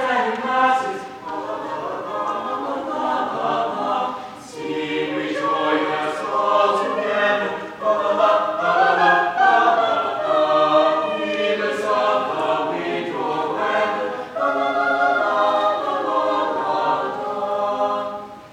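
Mixed-voice chamber choir of about ten singers singing a Christmas carol a cappella in harmony.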